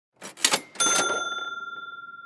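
Cash-register 'ka-ching' sound effect: a couple of quick mechanical clacks, then a bell ding that rings on and slowly fades.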